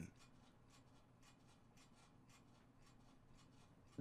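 Near silence: room tone, with a few faint scattered ticks.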